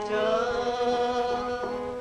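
A song: a voice holds one long, nearly level sung note over a steady lower tone.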